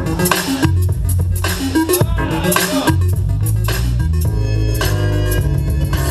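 Loud dance music played by the DJ for a popping battle, with a heavy bass line and a steady beat.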